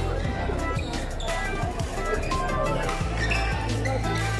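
Music with a steady beat and a bass line that moves between held notes.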